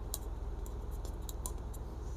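Blue marker pen writing on paper: a run of short, faint scratchy strokes, with a low steady hum underneath.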